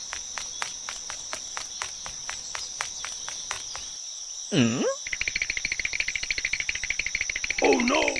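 Crickets chirring: a steady high ring with regular ticking about five times a second, then a fast buzzing trill in the second half. About halfway through, a short gliding voice sound dips and rises in pitch.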